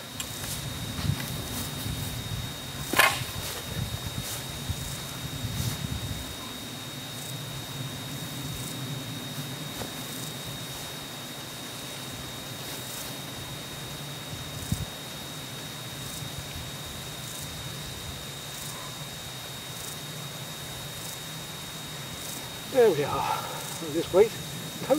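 Riverbank outdoor ambience: a low rumble that rises and falls for the first few seconds and then settles, a thin steady high tone throughout, and one sharp click about three seconds in.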